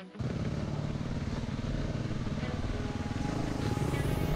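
Off-road motorcycle engine running under way along a dirt trail, a steady engine drone that comes in abruptly just after the start and grows slightly louder near the end.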